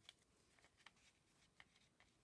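Near silence, with a few faint ticks as a small stack of paper cards is handled.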